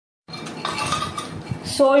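Broken bourbon biscuit pieces tipped from a glass bowl into a steel mixer-grinder jar, clattering and clinking against the glass and the steel. The sound begins a moment in and runs until a voice starts near the end.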